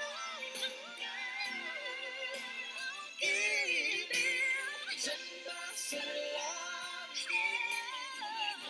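Live pop ballad duet with band accompaniment: a male voice sings, then a louder female voice takes over about three seconds in, with sustained, ornamented high notes. The low end is missing, so it sounds thin.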